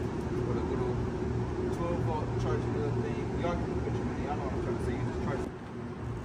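Faint, indistinct talking over a steady low hum. The hum drops away briefly about five and a half seconds in.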